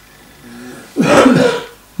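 An elderly man clearing his throat once, a short burst about a second in, after a faint brief hum.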